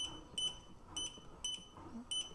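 Control-panel beeps of a motorized under-desk elliptical: three short, high beeps about half a second apart, one for each press of the speed button as the speed setting steps down.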